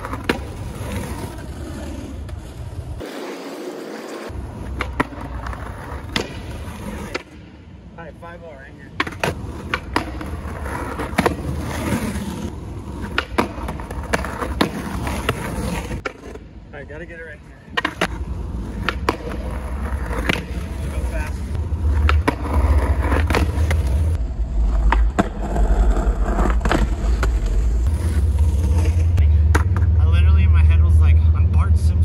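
Skateboard on asphalt and a concrete curb: wheels rolling, metal trucks grinding along the curb edge on 5-0 grind attempts, and repeated sharp clacks of the board striking the ground. Two brief lulls break it, and a low rumble grows louder toward the end.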